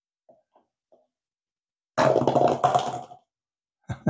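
Rubber-band-powered paper cup roller toy released on a wooden floor: a few faint taps, then about two seconds in a loud, rough rattling buzz lasting about a second as the wound band lets go, and a quick run of clicks near the end. The toy is not working as well as hoped.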